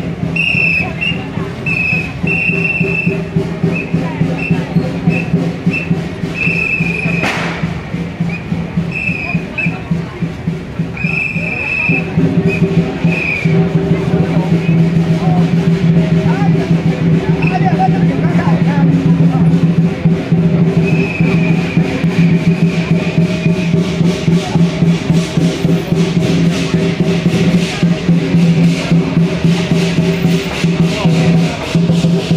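Street-procession music with a fast, steady percussion beat over a sustained low tone, louder from about twelve seconds in. Short, repeated high whistle blasts sound through the first half.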